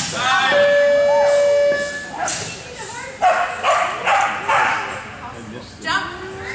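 Excited dogs barking and yipping, with a long held whine in the first two seconds followed by a run of short, sharp barks.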